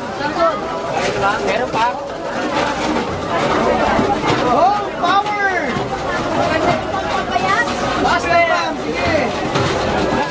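Several people chattering at once, with overlapping voices, over a steady low mechanical noise from a pedal-powered PET bottle shredder being pedalled.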